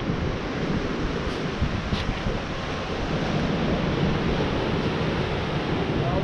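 Wind buffeting the microphone over a steady rush of ocean surf.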